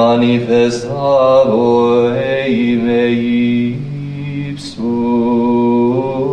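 Sung liturgical chant: voices singing a slow melody of long held notes, with a short break after about four and a half seconds.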